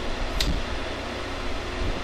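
Steady whir of a fan or air-conditioning unit with a low hum underneath, and a single brief click a little under half a second in.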